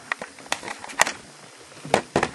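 A few short clicks and taps, about four in two seconds, over a quiet room background; no guitar notes ring out.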